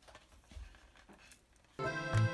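A few faint clicks and scrapes of a spoon digging butter out of a tub, then background music with a steady beat comes in near the end and is the loudest sound.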